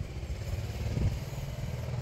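A 2001 Toyota Camry's engine idling: a low, steady rumble.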